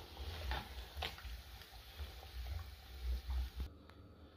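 Pork pieces sizzling as they fry in fat in a large aluminium pot, the meat done. A spoon clicks against the pot a few times as the pieces are stirred and lifted. The sizzle cuts off suddenly near the end.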